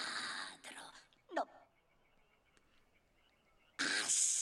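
A raspy, whispering voice: a hissed word ends the first moment, a brief strained vocal cry comes about a second and a half in, then a pause, and loud hissing whispered speech starts near the end.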